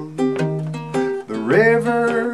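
Baritone ukulele picked as accompaniment to a slow cowboy song, with several separate plucked notes. A held, wavering melody note comes in over it a little past the middle.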